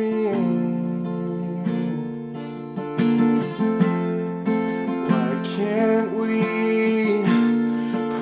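Acoustic guitar strummed in slow chords, accompanying a ballad.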